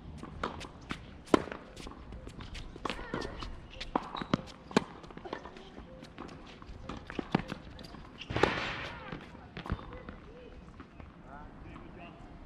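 Tennis rally on a hard court: a string of sharp pops from racket strikes on the ball and ball bounces, the loudest about a second in and a cluster around four to five seconds in, with running footsteps between.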